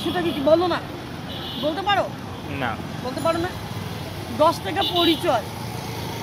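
Voices talking in short spells over a steady low rumble of road traffic.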